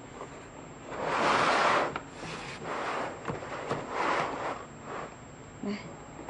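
Black impact-resistant hard-plastic tool case being handled and opened: three stretches of plastic rubbing and scraping as the lid is worked and swung open, the first about a second in the loudest.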